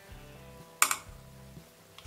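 A single sharp clink of a metal spoon against a stainless steel pot, about a second in, while thick cooled pudding is stirred. Quiet background music plays under it.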